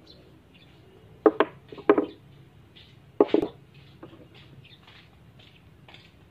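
Objects being handled on a wooden tabletop: a few sharp knocks and clatters, a close pair about a second in, another near two seconds and one just past three seconds, as a wooden block and a knife are picked up and set down.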